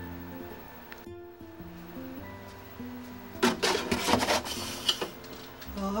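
Soft guitar background music plays throughout. About three and a half seconds in there is a second or so of plastic clatter and knocking as a plastic gallon milk jug is set down into a refrigerator's plastic door shelf.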